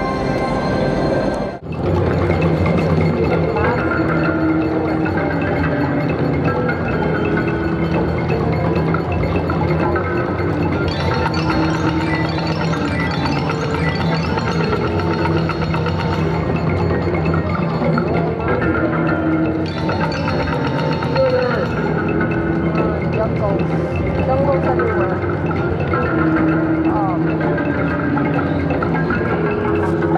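Jungle Wild II slot machine playing its bonus free-spins music, with marimba-like mallet notes and chimes, over a busy casino background. The sound drops out briefly about a second and a half in.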